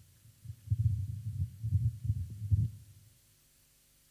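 Irregular, muffled low thumps of handling noise on a handheld microphone, dying away a little before three seconds in.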